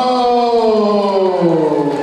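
Ring announcer's voice stretching out a fighter's name in one long drawn-out call that slowly falls in pitch.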